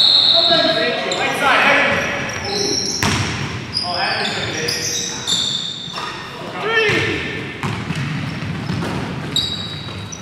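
Basketball game in a reverberant gym: sneakers squeaking on the hardwood court, the ball bouncing, and players calling out now and then.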